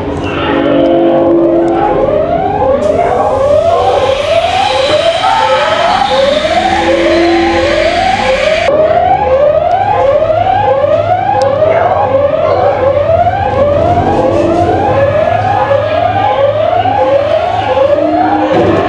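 Alarm siren from an exhibit's sound effects: a rising whoop repeating evenly, about three every two seconds. A loud hiss joins it a few seconds in and cuts off suddenly about halfway through.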